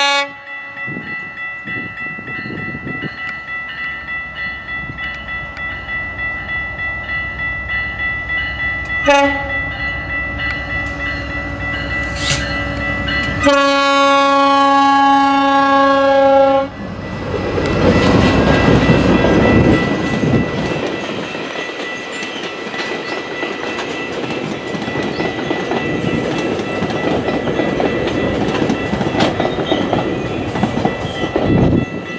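GO Transit bi-level cab car 681 leading a push-pull train over a level crossing: its horn sounds a short blast about nine seconds in, then a longer blast of about three seconds. The wheels clatter in a steady rhythm that grows louder as it approaches, and from a little past the middle the bi-level coaches roll past close by with loud wheel and rail rumble.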